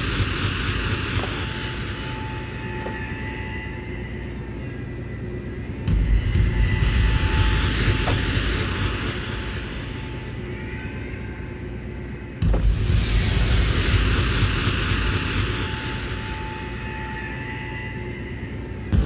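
Dramatic film background score and sound design: deep rumbling swells with an airy, wind-like whoosh over a held tone, surging suddenly about six seconds in and again about twelve seconds in, each time fading slowly.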